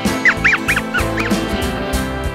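Background country-style guitar music, over which a quick run of about six short, high squeaky chirps, each rising and falling in pitch, plays in the first second or so.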